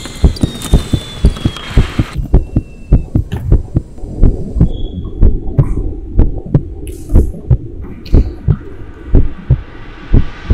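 Heartbeat sound effect: fast, regular low thumps over a steady hum, a racing heart. A thin whistle-like tone falls in pitch and fades out in the first two seconds.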